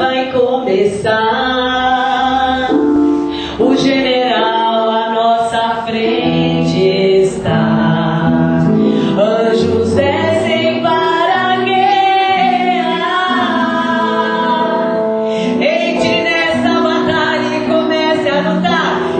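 A woman singing a gospel chorus into a microphone, holding long notes over steady instrumental backing.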